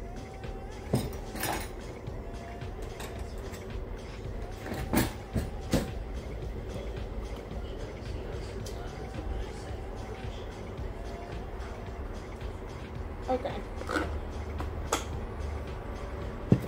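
A knife scraping and tapping in a plastic butter tub: scattered sharp clicks and knocks about a second in, around five to six seconds, and again near the end, over a low steady hum.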